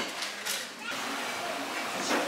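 Indistinct background chatter of people talking in a busy bar room, over a steady murmur of room noise, with one brief soft click about half a second in.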